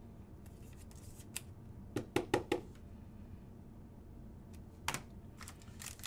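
Trading card being slid into a clear plastic sleeve and top loader: quiet plastic handling with a few light clicks and taps, a quick cluster of them about two seconds in.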